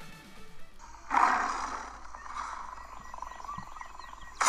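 Electronic background music fades out, then, about a second in, a big-cat roar sound effect plays from a streamed video and dies away over about a second. Fainter jungle ambience with chirping bird calls follows.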